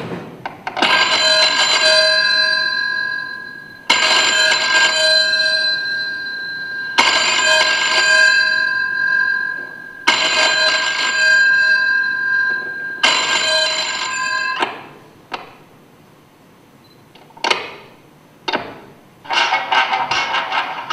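A recorded ringing tone, like a bell or telephone, rings five times about three seconds apart, each ring dying away. A few sharp clicks follow, and music starts near the end.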